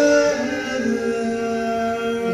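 Male barbershop quartet singing a cappella in close four-part harmony, holding sustained chords that move to a new chord about half a second in.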